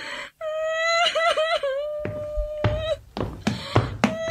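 A high child's voice holding one long wailing note that wavers in the middle and breaks off after about two and a half seconds, followed by a few sharp knocks.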